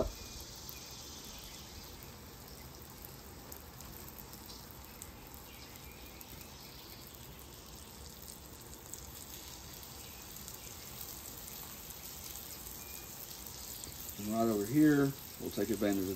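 Breaded country fried steaks frying in a pool of oil on a flat-top griddle: a low, steady sizzle.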